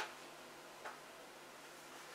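Quiet room tone with two faint short clicks a little under a second apart.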